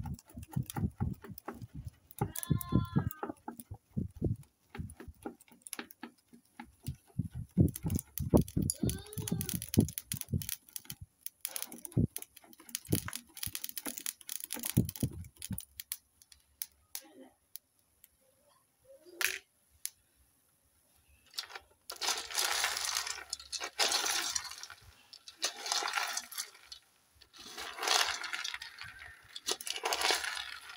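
Palm kernels frying in an aluminium pot over a fire, giving a dense run of sharp crackles and clicks as they release their oil. In the last several seconds come loud bursts of rattling as the hard kernels are stirred with a wooden spatula.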